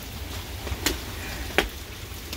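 Two footsteps on wet pavement, sharp scuffs a little under a second in and again near the end, over a low steady rumble.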